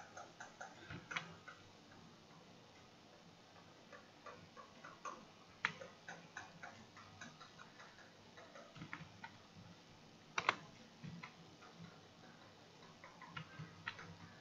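Faint, irregular clicks of a computer mouse, sometimes in quick runs, with two louder clicks in the middle stretch.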